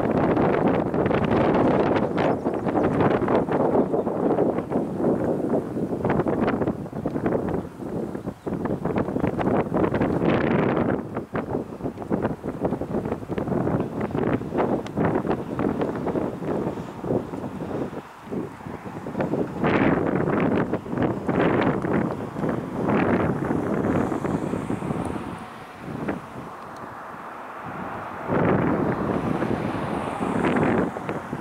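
Wind buffeting the microphone in gusts: loud, uneven fluttering noise that eases for a few seconds near the end, then picks up again.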